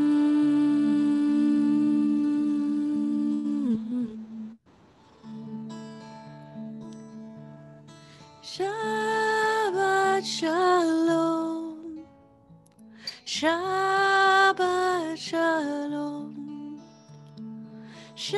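A woman hums one long, steady note on D, which stops about four seconds in. Acoustic guitar chords follow, and she sings two phrases over them, the second starting near 13 seconds.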